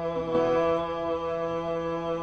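Harmonium holding a steady chord of several sustained notes, with a light drum stroke about a third of a second in.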